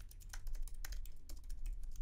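Typing on a computer keyboard: a quick run of keystroke clicks entering a line of text.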